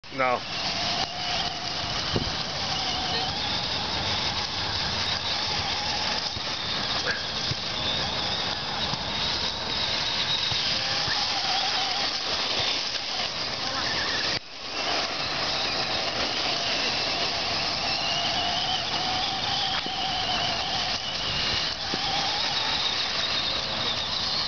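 Traxxas Stampede 1/10-scale RC monster truck running on dirt: a whine from its motor and drivetrain rising and falling in pitch with the throttle, over a steady hiss. The sound cuts out briefly about halfway through.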